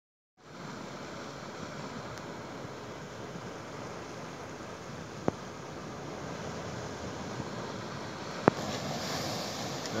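Steady surf and wind noise on the microphone, with two sharp clicks, one about halfway through and a louder one near the end.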